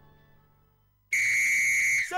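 Background music fading away to near silence. About a second in, a loud, steady, high-pitched whistle tone cuts in suddenly and holds: a sound effect opening a TV commercial.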